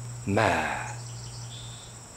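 Crickets chirring steadily at a high pitch throughout, with a man's voice speaking one slow word about a quarter second in.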